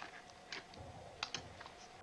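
A plastic Yuppy Puppy Gumball Machine treat dispenser clicking as a dog works it with his nose to release kibble. There are a few short sharp clicks, one about half a second in and a quick pair past the one-second mark, with a soft low knock between them.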